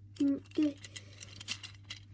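A few light clicks of a plastic Gordon toy engine being handled and turned over in the fingers.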